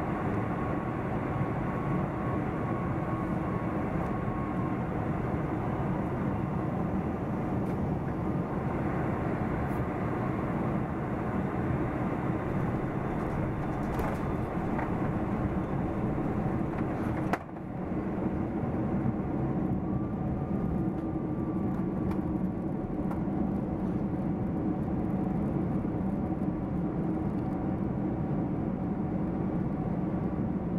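Steady cabin rumble and airflow hiss of a British Airways Boeing 747-400 with Rolls-Royce RB211 engines, heard from a seat over the wing as it comes in over the runway to land. There is a single sharp knock about 17 seconds in.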